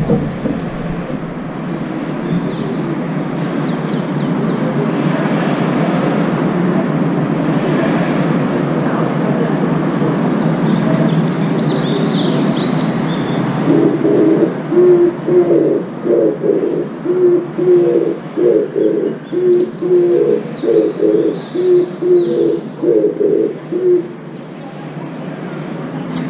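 Oriental turtle dove singing its coo song: a rhythmic run of low, repeated coo phrases that starts about 14 seconds in and continues to the end.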